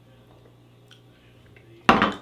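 A low steady hum under a quiet pause, then, just before the end, one sudden loud knock of a small drinking glass being set down on a wooden bar top.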